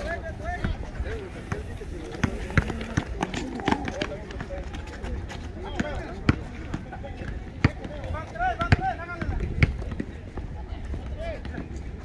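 Outdoor pickup basketball on an asphalt court: a basketball bouncing in sharp, separate thuds, with running footsteps and the indistinct voices of players and onlookers.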